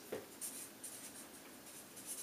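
Felt-tip marker writing on flip-chart paper: a series of short, faint scratching strokes.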